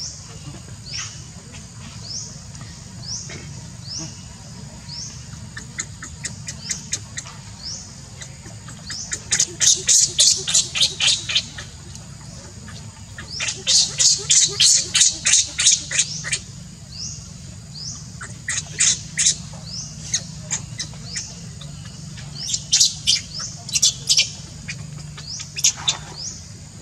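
Baby macaque screaming in runs of rapid, shrill, high-pitched squeals, the longest about ten and fifteen seconds in, after fainter rising chirps in the first few seconds. These are an infant's distress cries, begging its mother for milk.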